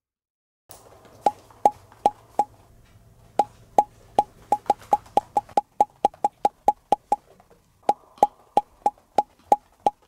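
Music made of quick, sharp woodblock-like taps in an uneven rhythm of about three a second, starting about a second in over a faint hum that drops away halfway through.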